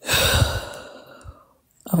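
A person's long sigh, starting loud and fading away over about a second and a half, followed by a spoken 'Okay' near the end.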